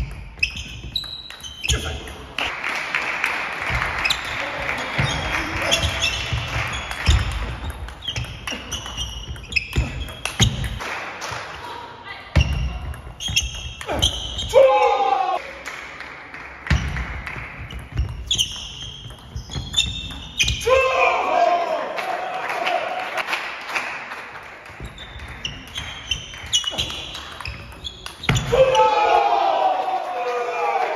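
Table tennis rallies: the plastic ball clicking repeatedly off bats and table, with low thumps between the hits and voices shouting now and then, ringing in a large sports hall.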